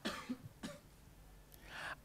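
Two faint, short throat-clearing sounds about half a second apart from a man.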